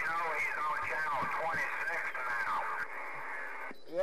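A distant station's voice coming in over a Galaxy CB radio's speaker, thin and band-limited with static hiss, the words too garbled to make out. The transmission and its hiss cut off shortly before the end.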